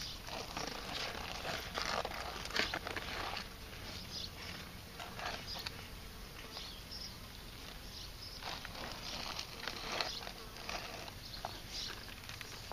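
Box turtles shifting on dry, sandy soil: faint irregular scratching and rustling with scattered light clicks of claws and shell on dirt.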